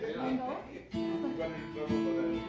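Acoustic guitar music with a strummed chord that rings on from about a second in, with voices over the first second.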